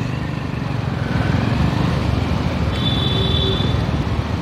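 Steady low rumble of city road traffic and engines, with a brief high-pitched beep about three seconds in.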